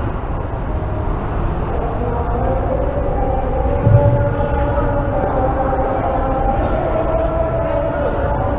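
Steady rumbling background noise in a large sports hall with faint sustained tones, broken by a single low thump about four seconds in.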